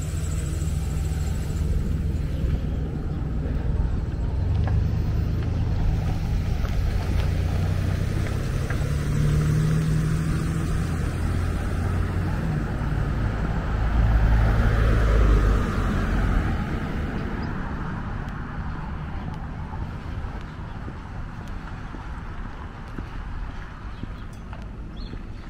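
A car passing on the street, swelling and fading about two-thirds of the way in, over a steady low rumble of wind on the microphone.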